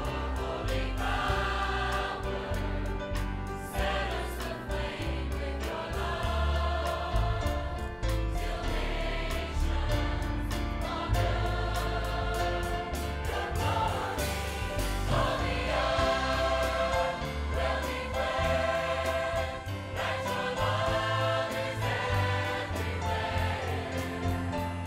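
Large mixed choir of men and women singing a gospel song over instrumental accompaniment with heavy bass and a steady beat.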